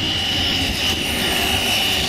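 Electric motor and propeller of a Parkzone T-28 Trojan foam RC model giving a steady high whine as it lands and rolls along the runway, over a low rumble.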